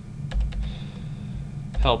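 A few computer keyboard key presses about half a second in, with a low thump, over a steady low hum; a man's voice starts near the end.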